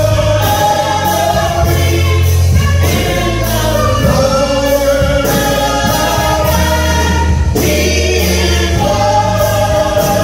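Gospel vocal group of women and men singing into microphones, with an instrumental accompaniment that holds low sustained bass notes underneath.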